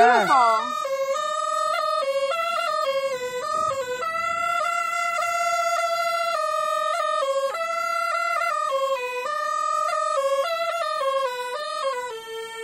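Qiang bamboo pipe (qiangdi) playing a melody of held and stepping notes in one unbroken stream, with no pause for breath: the player keeps the sound going by circular breathing.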